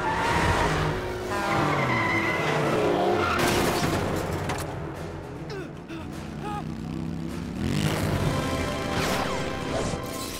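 Cartoon car-chase sound effects over background music: a car engine revving and tyres skidding, with loud noisy bursts about half a second in, at about three and a half seconds and near eight seconds.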